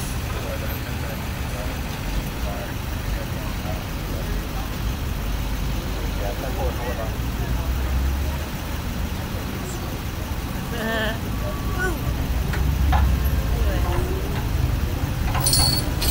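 Street traffic rumbling steadily, with faint voices. Near the end, a few sharp metallic clinks as a tow chain is hooked under a car.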